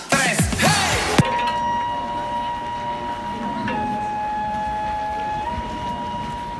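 Electronic dance music that cuts off about a second in, giving way to one long, steady held note from a gagaku wind instrument of Shinto ceremonial music. The note drops slightly in pitch a little before halfway and steps back up near the end.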